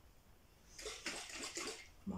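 Liquid pouring into a jar, a steady hissing splash that starts about a second in.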